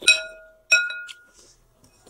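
Metal spoon and fork striking a glass bowl: two clinks, each ringing briefly, the second about three-quarters of a second after the first.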